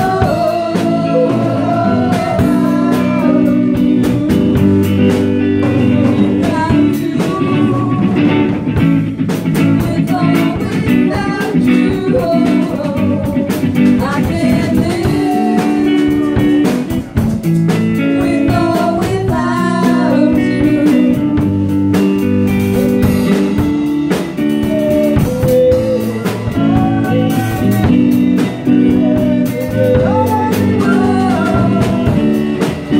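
A live band plays a song on electric guitar, bass guitar and drum kit, with several women singing together into microphones.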